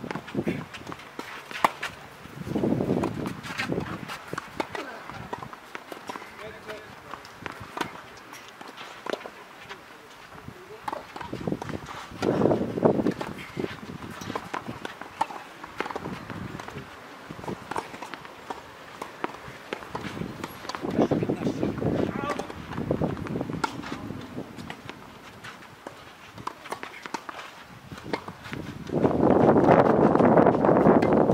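Tennis rally on a clay court: sharp racket-on-ball strikes and players' footsteps on the clay, with indistinct voices in a few short stretches.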